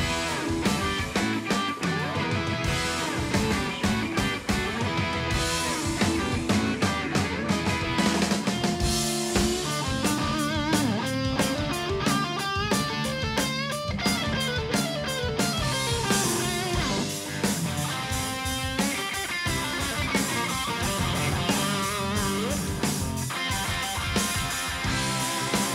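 Live rock band playing an instrumental passage on electric guitar and drum kit, with no vocals. The electric guitar plays wavering, bent notes over steady drumming, most prominent in the middle.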